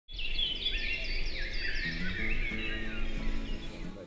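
A chorus of small birds chirping and singing in quick, overlapping notes, with soft background music coming in about two seconds in.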